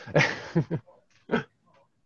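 A person laughing over a conference call: a few short, breathy bursts in the first second and one more near the middle, then quiet.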